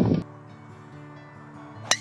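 A single sharp crack near the end as a golf club strikes the ball on a full swing, over soft background music.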